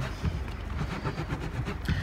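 Soapy wet wool egg being rubbed by hand on a ridged wet-felting mat, a repeated wet scrubbing sound over a low rumble.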